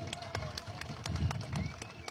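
Hand clapping from several people: a dense run of irregular, sharp claps.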